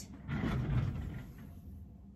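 A quilt rustling as it is lifted and turned by hand: a brief soft swish of fabric in the first second that fades away.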